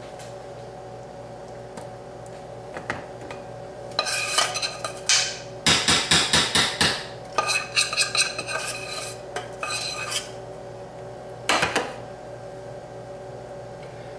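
A metal spoon scraping and clinking against a metal baking pan as icing is spread along its sides: a run of quick strokes beginning about four seconds in, fastest and loudest around six seconds, with one last scrape near the end.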